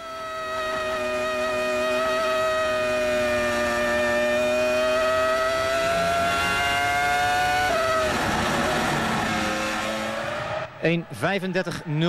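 Williams-BMW FW26 Formula One car's BMW V10 engine at high revs, heard from on board. Its pitch climbs steadily along a straight, then drops sharply about eight seconds in, followed by a rough, broken stretch and a lower steady note.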